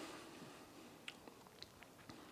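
Near silence with faint mouth sounds of whiskey being tasted: a soft hiss fading out at the start, then a few small wet lip and tongue clicks.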